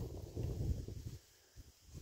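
Faint, irregular footsteps on sandy ground with camera handling noise, dropping to near silence about a second in.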